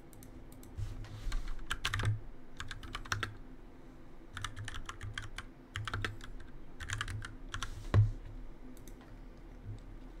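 Computer keyboard keys clattering in short, irregular bursts, with a single louder knock about eight seconds in.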